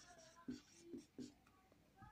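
Faint strokes of a felt-tip marker writing on paper, a few short scratches about half a second apart.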